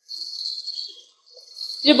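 Onions and tomatoes sizzling in hot oil in a nonstick kadai as they are stirred, a quiet high hiss for about a second that fades out, then returns just before a woman starts speaking.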